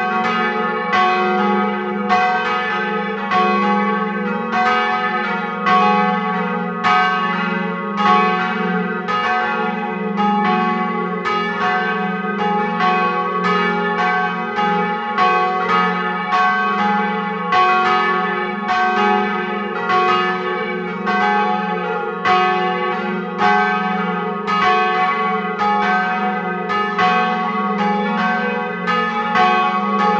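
Several church bells, cast by Cornille-Havard in 1919, ringing together in full swing. Their strikes overlap at about two to three a second over a steady low hum, heard close up in the belfry.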